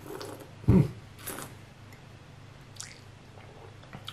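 A man's closed-mouth 'mm' of approval about a second in, then a few faint, brief wet mouth sounds of tasting: lip smacks and swallowing after a sip.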